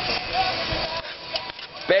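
Quiet background talking, with a few light clicks of a knife scraping chopped green peppers off a plate into a metal pot.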